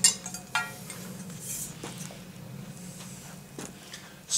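Metal jet-engine blades clinking and knocking as they are picked up: a sharp clink at the start and a second, briefly ringing one about half a second later, then a few faint knocks. A low steady hum runs underneath.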